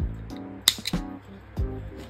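Background music, with one sharp snip a little under a second in: small thread snips cutting a yarn tail.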